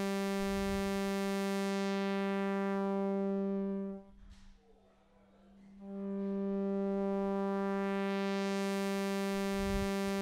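Original vintage ARP 2600's oscillator 3 sounding a steady buzzy note through its voltage-controlled filter at 25% resonance, with the filter cutoff being swept. The tone grows duller as the cutoff closes, is shut off almost completely about four seconds in, then brightens again as the filter is opened from about six seconds.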